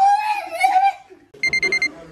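A man's drawn-out, high-pitched vocal cry, followed about a second and a half in by a quick run of about six short electronic beeps, like an alarm-clock beep.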